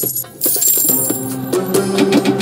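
Online video slot game sound effects: a coin-like jingling chime as a win pays out, then a rapid run of clicks as the reels spin. Game music with sustained melody notes comes in about halfway through.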